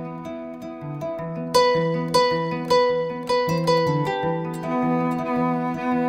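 Kora and cello duet: a steady pulse of plucked kora notes over a sustained bowed cello line. The plucked notes come in louder and brighter about a second and a half in.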